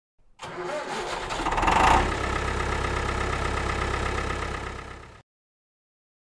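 An engine starting, then running steadily before fading out about five seconds in.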